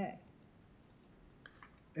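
Quiet room tone with a few faint, scattered clicks, after the tail of a spoken word at the very start.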